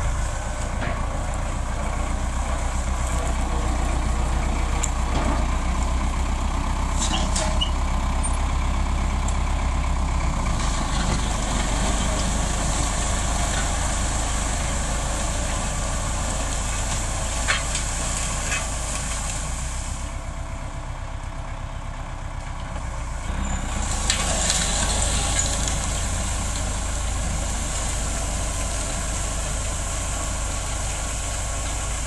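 Tractor diesel engine running steadily under load while pulling a disc plough through dry ground. The sound eases off for a few seconds past the middle, then picks up again.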